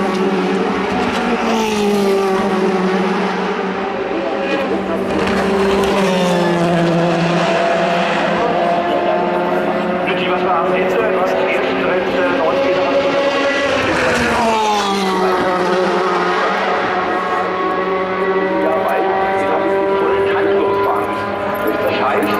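DTM race cars' V8 engines going by at racing speed, one after another, the pitch falling as each car passes, with steadier engine notes held between the passes.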